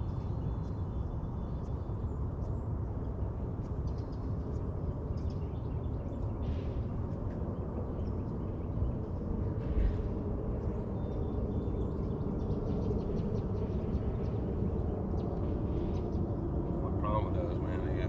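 Steady low rumble with a faint motor hum on a bass boat; the hum grows a little louder over the last few seconds.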